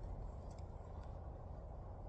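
Quiet, steady low background rumble with a faint click about half a second in.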